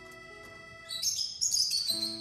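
A lovebird giving a burst of shrill, high chirps about a second in, lasting about a second, over background music with steady tones.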